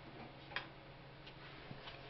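Quiet room with a low steady hum and a few faint, irregular clicks, the clearest about half a second in.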